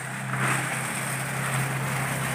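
Water spraying from a garden hose nozzle onto shrubs, a steady hiss that starts about half a second in, over a steady low hum.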